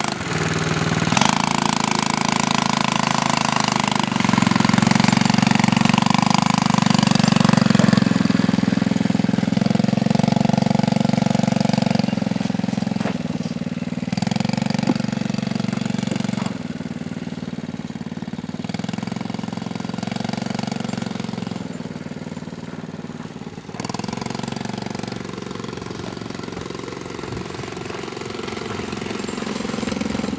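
Small youth ATV engine running as the quad is ridden around, its note stepping up and down with the throttle. It is loudest in the first part and fades for a while as the quad moves farther off, then grows louder again near the end.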